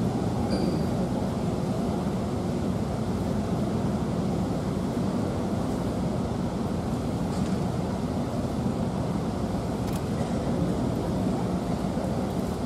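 Steady low rumble of background room noise in a large sports hall, with no distinct events.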